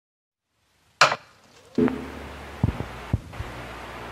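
A series of sharp hits and low thuds over a low hum: a loud crack about a second in, a deeper hit with a brief ringing tone just before two seconds, then two low thuds.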